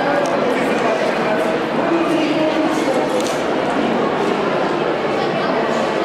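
Many people talking at once in a large indoor hall, a steady echoing hubbub of voices with no single voice standing out.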